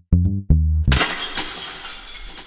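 Electronic music of short, punchy synth bass notes, cut off about a second in by a sudden crash of shattering glass whose bright ringing slowly fades.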